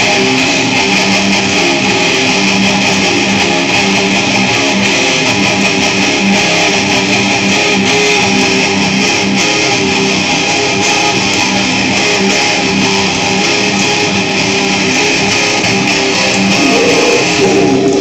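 Two electric guitars played loud through amplifiers in a metalcore riff, a dense, continuous wall of sound at an even level.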